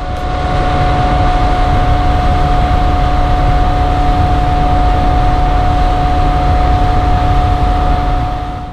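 Suzuki outboard motor running steadily at cruising speed with a constant whine, under a loud rush of wind and water as the boat planes.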